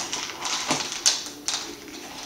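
A dog's claws clicking on a laminate floor and a rubber ball knocking against the floor and skirting board as the dog paws and noses it: a few sharp, irregular taps.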